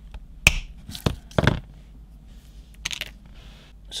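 Sharp clicks and taps of stiff wire and needle-nose pliers being handled on a work surface: a few clicks in the first second and a half, the first one loudest, then a quick cluster of clicks near three seconds.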